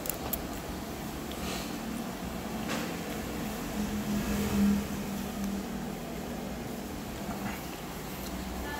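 Steady low background hum with a low tone that swells briefly about four to five seconds in, and a few faint light clicks.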